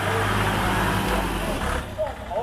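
Ford tractor engine revving hard as the tractor pulls away from a standing start. The engine note cuts back suddenly near the end.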